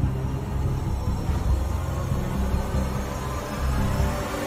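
Film-trailer soundtrack: a low, steady rumbling music drone with little above it.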